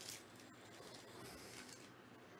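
Near silence, with faint rustling of a stack of trading cards being handled just out of the wrapper.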